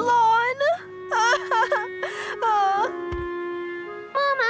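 A cartoon girl's voice crying in three short wailing bouts, pitch dipping and rising within each, over held background music notes.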